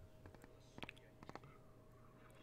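Near silence, broken by a few faint, sharp clicks a little under and a little over a second in: a glass soda bottle being handled and raised to drink.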